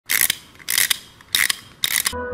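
Plastic wind-up chattering-teeth toy being wound by its key: four bursts of ratcheting clicks, about one every half second.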